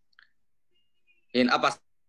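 A pause in a man's talk: a couple of faint short clicks at the start, then near silence, then a brief spoken syllable or two from the man near the end.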